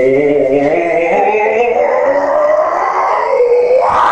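A man's long, loud, drawn-out scream with no words, held at one wavering pitch.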